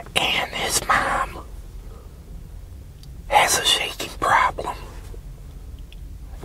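A man's soft, whispery speech in two short stretches, one at the start and one about three and a half seconds in, over a faint steady low hum.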